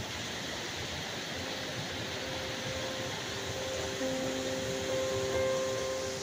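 Steady rushing of a waterfall. Soft music of long held notes fades in about a second and a half in and grows fuller toward the end.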